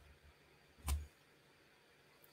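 A single short knock about a second in: a clear acrylic stamp block against the paper-covered work table during stamping.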